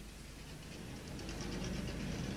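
Faint, muffled engine noise from speedway saloon cars circulating on the track, slowly growing louder.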